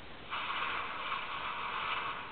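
HTC Thunderbolt smartphone's boot sound playing from its small speaker as the phone restarts: a harsh noise about two seconds long that starts a moment in.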